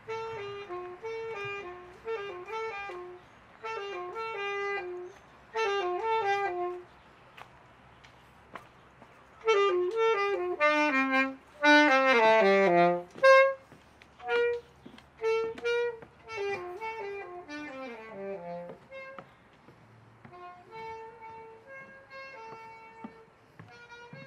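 A saxophone played live, in short phrases of descending runs. It grows louder to a fast run of notes about halfway through, then turns softer, with longer-held notes near the end.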